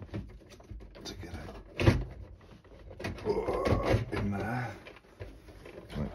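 A plastic circuit-board housing being shifted and knocked into place inside a washer dryer's cabinet, with one sharp knock about two seconds in and handling and scraping after it.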